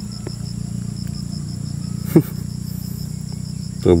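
Crickets and other insects chirping in the undergrowth: a steady high drone with a faint chirp pulsing about four times a second, over a low steady hum. One short sharp click sounds about two seconds in.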